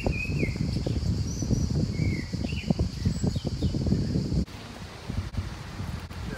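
Birds chirping in short calls over a steady high hiss, with a loud, choppy low rumble on the microphone that cuts off abruptly about four and a half seconds in.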